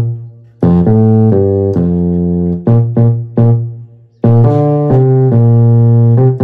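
Yamaha keyboard on its E.Piano 1 voice playing a left-hand bass line in the low register: a run of short notes and a long held note, a short break about four seconds in, then the phrase starts again with another held note.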